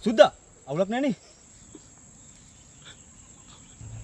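Two short vocal cries from a man in the first second or so, then quiet over a steady high-pitched insect drone from the surrounding vegetation.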